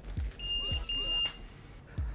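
Two high-pitched electronic beeps in quick succession, the second a little longer.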